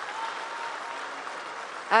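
Large crowd applauding, a steady even clapping that holds through the pause, with speech coming back in at the very end.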